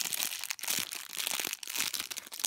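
Clear plastic packaging bag crinkling as hands squeeze and turn the foam squishy sealed inside it: a continuous run of quick crackles.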